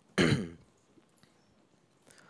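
A man clearing his throat once, briefly, near the start.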